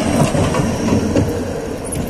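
City tram passing close by, running steadily over the rails with a low rumble that eases slightly near the end.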